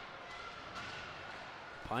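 Ice hockey arena ambience picked up by the rink microphones: a low, steady crowd murmur with faint clicks and scrapes of sticks, puck and skates on the ice.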